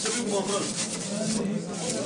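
Rubbing and rustling noise of things being handled, with a dense scratchy texture that is busiest in the first second and a half.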